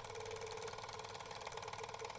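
A faint, steady buzz with a rapid, even pulse and a held mid-pitched tone.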